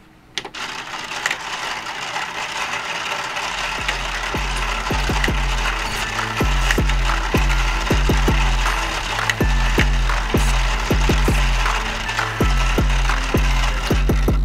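Motorized faders on a Behringer BCF2000 control surface driven by playback automation, making a busy mechanical whirring with many small clicks as the motors push the fader caps up and down. Music with a heavy, rhythmic bass line comes in about three and a half seconds in.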